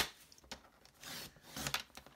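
Stampin' Up! paper trimmer: a sharp click as the clear cutting arm comes down onto the base, then the blade carriage sliding down the track and slicing through cardstock, heard about halfway through as a short scraping rustle.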